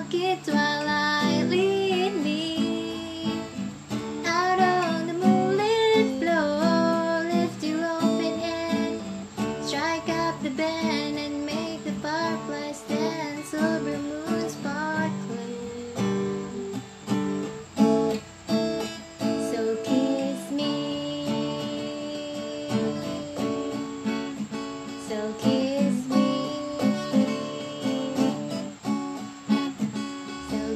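Acoustic guitar strummed, with a voice singing a melody without clear words over roughly the first half; the guitar carries on alone after that.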